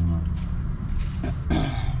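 A man clearing his throat once, about a second and a half in, over a steady low hum, with a few faint clicks of items being handled before it.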